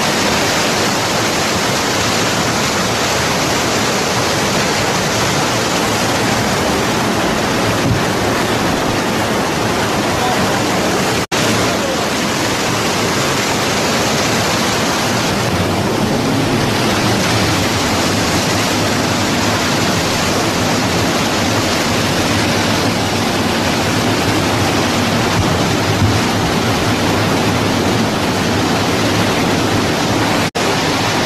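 Muddy mountain torrent rushing and cascading between boulders: a loud, steady roar of white water. The sound breaks off for an instant about eleven seconds in.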